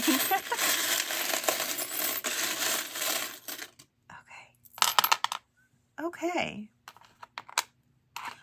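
Small metal charms jingling together in a dense rattle for about three seconds, then a few separate clinks as they land and settle on the tabletop board.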